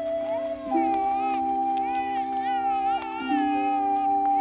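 A newborn baby crying in several short wails, each rising and falling in pitch. Background music of long held notes plays under it.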